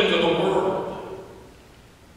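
A person's voice: one drawn-out vocal sound, strong for about the first second and then fading away.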